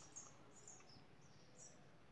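Near silence: room tone with a few faint, brief high-pitched chirps, like birds calling in the distance.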